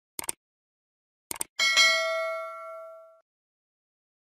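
Subscribe-button sound effect: two quick mouse clicks, two more about a second later, then a bright notification-bell ding that rings with several tones and fades out over about a second and a half.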